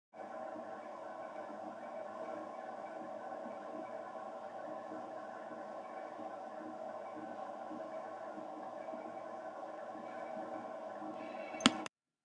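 A steady drone of several sustained tones, fairly quiet and unchanging. It ends with two sharp clicks just before it cuts off suddenly.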